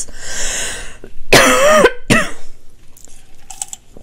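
A woman coughing and clearing her throat: a breathy cough first, then a louder, voiced throat-clear about a second and a half in, and a short one just after.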